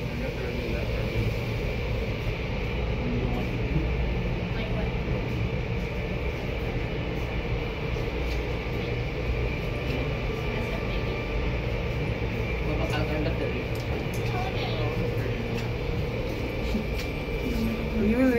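Automatic tunnel car wash machinery running behind the viewing-gallery glass: a steady mechanical rumble and hum from the brushes, sprayers and conveyor, with a faint steady high tone over it.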